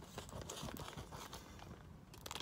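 Faint soft taps and clicks of kitchen scissors and a packaged steak being handled, just before the package is cut open.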